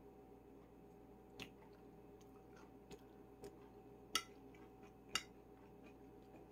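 Quiet eating sounds: a few short clicks of a fork against a bowl of cooked vegetables, the two loudest about four and five seconds in, over a low steady room hum.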